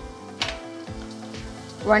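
Chopped onions and green chillies sizzling in oil in a frying pan, under soft background music with held tones and a light beat; a sharp click about half a second in.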